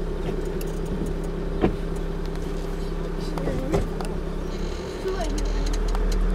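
Safari vehicle's engine idling steadily, heard from inside the cabin, with two sharp clicks a couple of seconds apart; the engine gets louder about five seconds in.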